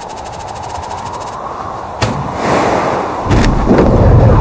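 Dramatic sound effects for a spacecraft descent animation: a fast run of ticks for the first second and a half, a sharp bang about two seconds in, then a rush of noise building into a deep rumbling boom near the end.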